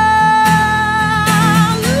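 A woman's voice holding one long sung note, wavering slightly, over strummed acoustic guitar, then sliding up into the next line near the end.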